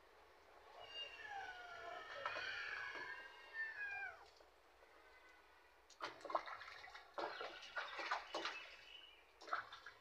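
A kitten meowing, a run of high, wavering cries lasting about three seconds, while it is held in a tub of bath water. From about six seconds in, water splashes in the tub as the kitten is washed.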